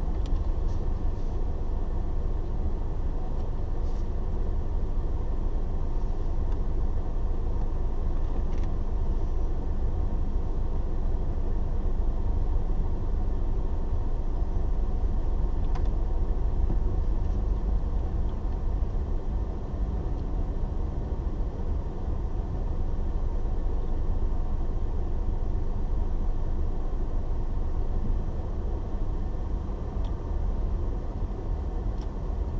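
Steady low rumble of a car's engine idling and the car creeping forward in stop-and-go traffic, heard from inside the cabin.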